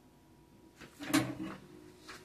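A single short knock with a brief clatter about a second in, lasting about half a second.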